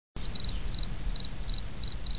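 Insect chirping: short high trills of three or four quick pulses, repeating about three times a second over a low rumbling background.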